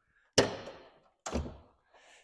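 Rear hatch of a 1980 Pontiac Firebird Trans Am being unlatched and opened. There is a sharp thunk about a third of a second in, then a second, softer thunk about a second later as the hatch comes up.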